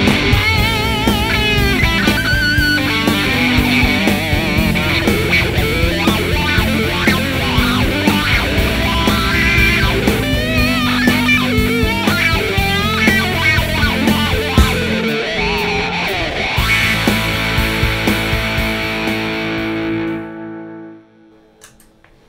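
Fender Custom Shop 1964 Stratocaster Relic electric guitar played through an amp: fast lead lines with wavering bends and vibrato, ending on a held note that rings and fades out about two seconds before the end.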